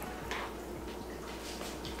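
Quiet room tone with a few faint, soft ticks.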